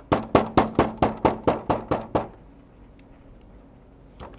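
A hair stacker is tapped on the bench to even the tips of a clump of bull elk hair: about a dozen quick, sharp knocks, roughly five a second, stopping a little after two seconds in.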